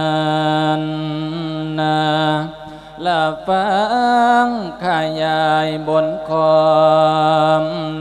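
A Buddhist monk's solo voice singing a melodic Isan sermon (thet lae), drawing out long held notes with wavering ornaments. It breaks off briefly twice around the middle, then resumes with another long note.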